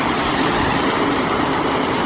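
A thick stream of water pouring from a giant tap fountain and splashing into a pond, a steady rushing noise.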